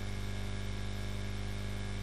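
Steady electrical mains hum with a background hiss, picked up by the recording microphone.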